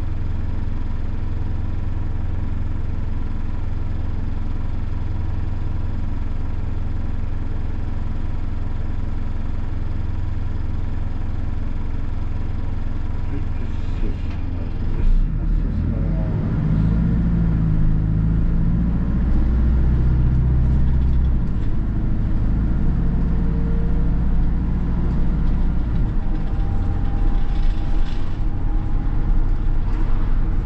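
Hino Poncho minibus's four-cylinder diesel engine heard from inside the cabin, idling steadily while stopped. About halfway through it picks up under load as the bus pulls away, its note shifting twice more as it speeds up.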